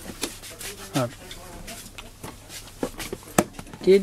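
Windowed cardboard toy boxes being handled and shifted: scattered light knocks and rubbing, with a sharp click just before the end, and a short bit of voice about a second in.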